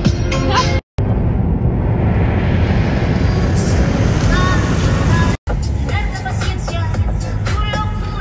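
Music with a beat playing in a car cabin, broken by two short cuts to silence, about a second in and about five and a half seconds in. Between the cuts, the steady rush of road and wind noise inside a car driving at high speed.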